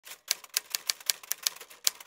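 Typewriter keys struck in a quick, uneven run of crisp clacks, about four a second, as in a typed-title sound effect.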